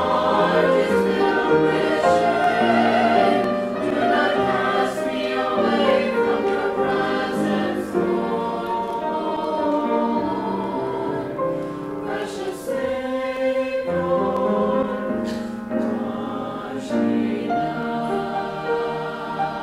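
Mixed church choir of men and women singing a hymn together from hymnals, the voices sustained and full, with a short break between phrases a little past two-thirds of the way through.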